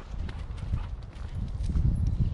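Footsteps on a muddy woodland track, heard as dull low thuds that grow louder in the second half.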